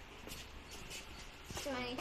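Quiet shop room tone with a few faint clicks, then a person's voice starts speaking near the end, drawn out and sliding in pitch.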